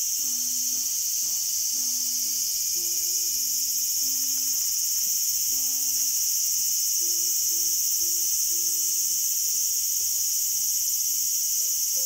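Cicadas singing in a continuous high-pitched buzz that holds steady throughout, with a faint melody of short notes underneath.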